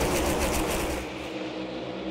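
A pack of NASCAR Cup Series stock cars with V8 engines at full throttle on a restart, a dense engine noise that fades about a second in as the field runs away down the straight.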